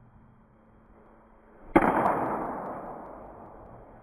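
Baseball bat striking a ball once, less than two seconds in: a single sharp crack that echoes and dies away over about two seconds.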